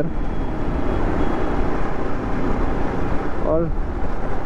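Motorcycle riding at speed: steady wind rush on the helmet-mounted microphone, with engine and road noise underneath.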